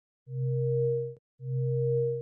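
Two steady electronic tones, each just under a second long with a short gap between them, a low hum with a higher tone above it, each cutting off sharply: an animation sound effect played as the two branches of the graph are drawn.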